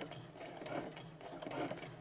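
Brother Innov-is computerized sewing machine running faintly and steadily while free-motion stitching, with the feed dogs dropped and an embroidery foot fitted, the speed control set a little above its slowest.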